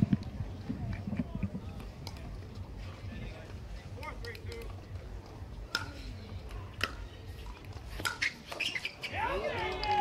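Pickleball paddles hitting a hard plastic ball during a rally: several sharp pops about a second apart over a low crowd murmur, with a voice near the end.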